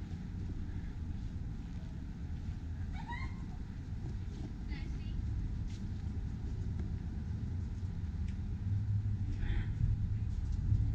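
Steady low rumble of distant city traffic, growing a little louder near the end, with a few short high-pitched voices, about three and five seconds in and again near the end.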